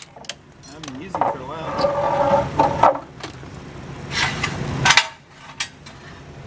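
Cordless impact wrench spinning the lug nuts off a race car's front wheel, running for a couple of seconds, followed by a few sharp metallic knocks as the wheel is worked loose.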